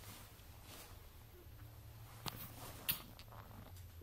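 Quiet room tone with a faint low hum, broken by two short clicks a little past halfway, about half a second apart.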